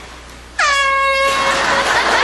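Handheld compressed-gas air horn blasted once about half a second in: a sudden loud, single-pitch honk lasting about a second. It gives way to a rush of noise as the startled man tumbles from his chair.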